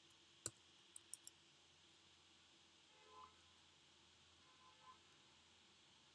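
Near silence broken by sharp clicks from computer use: one about half a second in, then three in quick succession about a second in.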